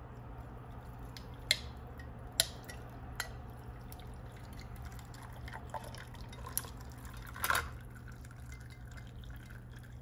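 Coffee poured from a glass carafe over ice in a tall glass, a faint liquid trickle under a steady low hum. The ice cubes give a few sharp cracks and clinks against the glass, the loudest cluster about seven and a half seconds in.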